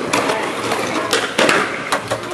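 Skateboard on concrete: about four sharp clacks of the deck popping and landing, with wheels rolling on the rough surface between them.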